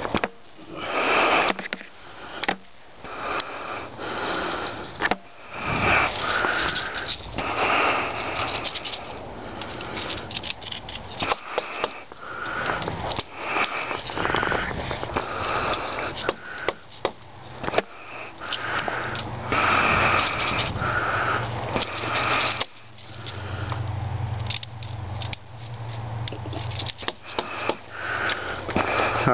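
A person breathing and sniffing close to the microphone, in repeated noisy breaths of about a second each, with scattered sharp clicks and rustles of movement.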